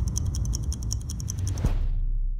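Logo-sting sound effect: a fast, even run of mechanical clicks, more than ten a second, like a ratchet or clockwork, over a low rumble, with a heavier hit near the end.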